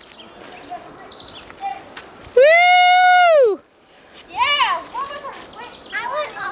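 A child's long, high-pitched shout, held for about a second from roughly two and a half seconds in, then a couple of shorter calls, amid children playing.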